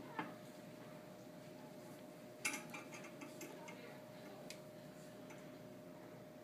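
Quiet room tone with a steady faint hum and a few light clicks, the loudest about two and a half seconds in.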